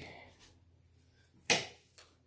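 A single sharp click or knock about one and a half seconds in, fading quickly.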